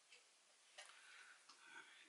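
Near silence: room tone with a few faint, sharp clicks and a soft rustle in the second half.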